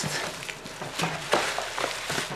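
Plastic wrapping and cardboard rustling and crinkling as hands unwrap a small packaged toy from a box, with a few sharper crackles.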